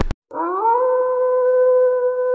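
A single long canine howl that starts just after a brief silent gap, rising in pitch and then held steady.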